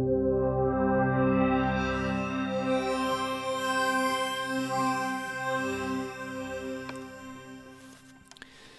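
Additive pad on the Native Instruments FM8 software synthesizer: detuned sine, square and sawtooth operators hold a chord with a slow beating wobble. It has an old-school, stringy, analog sound. About two seconds in it grows brighter as the top fills in, then it fades away near the end.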